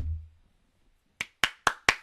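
A single thump right at the start, then four sharp hand claps in quick succession in the second half, a reaction of applause.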